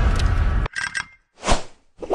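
Bass-heavy intro music that cuts off suddenly about a third of the way in, followed by short glitchy sound effects and a swelling whoosh that peaks and dies away, a logo sting.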